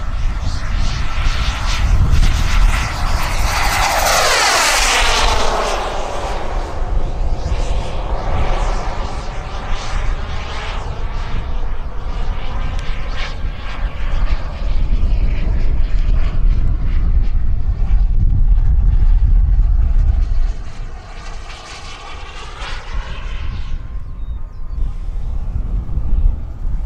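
Turbine engine of a radio-controlled scale Yak-130 jet in flight, whining loudest as it makes a fast pass about four seconds in, its pitch falling steeply as it goes by, then a steady whine that drifts up and down in pitch as it circles. A heavy low rumble of wind on the microphone runs under it until about twenty seconds in.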